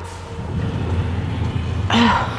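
Low rumbling and knocking as a stuck wooden barn door is pushed on and does not give, ending in a short straining grunt.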